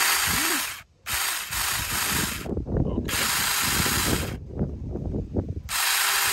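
Saker 4-inch mini cordless electric chainsaw (20-volt battery) running free, not cutting, in short test bursts of about a second each as the trigger is squeezed and released: three bursts, with a fourth starting near the end.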